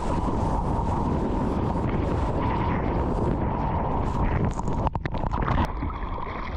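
Wind noise on the microphone of a camera held at the sea surface, with ocean water sloshing around it as a steady rush. About five seconds in, the sound cuts out briefly a few times and then changes character.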